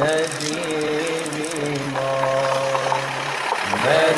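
Singing of a vocal religious song (ilahija), drawn-out wordless held notes over a steady low drone.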